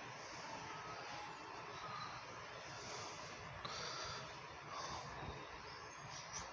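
Faint ambient background noise: a steady soft hiss with a few faint, distant thin tones and a brief higher hiss about three and a half seconds in.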